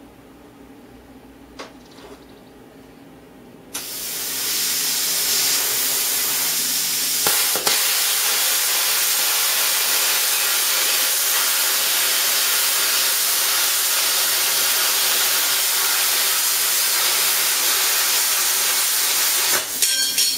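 Small domestic plasma cutter with a PT31 torch cutting a straight line through sheet metal. The arc starts about four seconds in with a sudden loud hiss that holds steady until just before the end.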